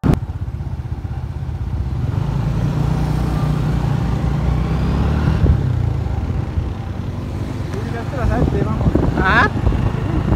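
Steady low rumble of a moving vehicle and street traffic, heard from on board. Indistinct voices join in from about eight seconds in.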